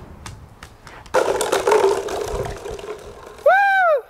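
A soccer ball strikes a set of plastic bottles standing as bowling pins, and the bottles clatter and roll across a concrete driveway for about two seconds. Near the end comes a short, loud whoop of celebration that rises and falls in pitch.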